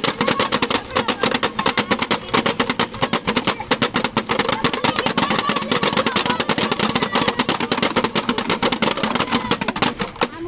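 Several homemade whirling friction toys, cut plastic bottles on strings swung around sticks, making a loud, continuous rattling buzz of very rapid clicks.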